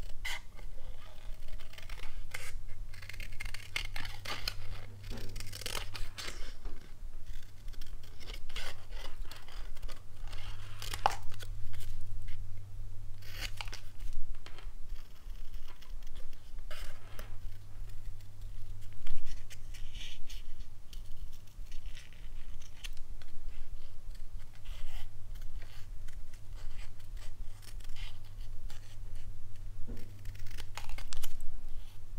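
Small paper snips fussy-cutting around a stamped image in white cardstock: a run of short, irregular snips of the blades through the card.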